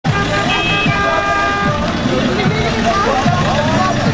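Car horn sounding for about a second, starting half a second in, with people's voices around it.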